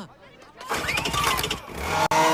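Cartoon sound effect of a tiny car's engine starting up and pulling away, after a brief quiet moment, beginning about two-thirds of a second in.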